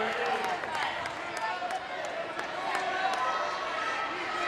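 Crowd chatter in a gymnasium: many voices overlapping at once, with scattered sharp knocks and clicks.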